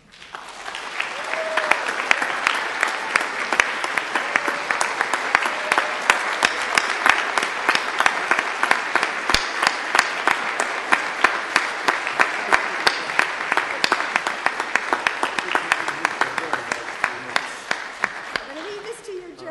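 Audience applauding: a dense, sustained round of clapping that swells up over the first second or two and eases slightly near the end.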